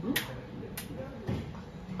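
Tokyo Marui MP5 airsoft gun firing single shots on semi-auto: two sharp clicks about half a second apart near the start.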